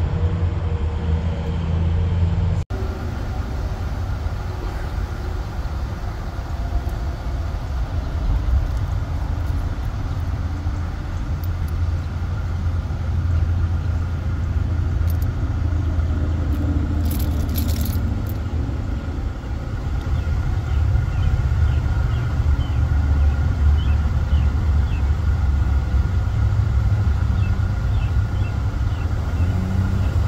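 A vehicle engine idling: a steady low rumble.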